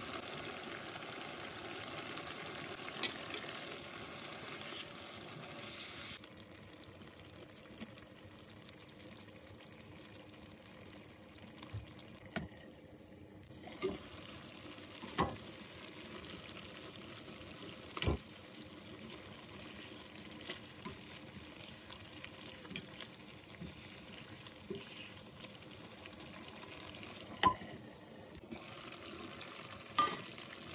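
Stew simmering in a pan: a steady bubbling hiss, louder for the first few seconds, with scattered sharp pops.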